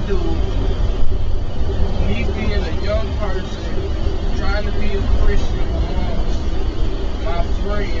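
Steady low road and engine rumble of a moving car, heard inside the cabin, with a man's voice over it.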